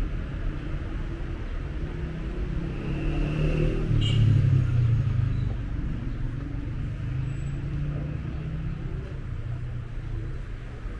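Busy city street ambience: a steady rumble of road traffic that swells as a vehicle passes close about four seconds in, with a brief sharp click at about the same moment.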